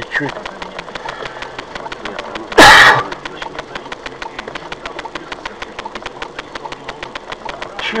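Cabin sound inside a stopped patrol car with its engine idling: a rapid, even ticking runs throughout, with a single loud burst of noise about two and a half seconds in.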